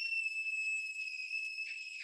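A young child's long, high-pitched scream, held at one shrill pitch and sinking slightly. It is loud enough to be a warning to headphone users.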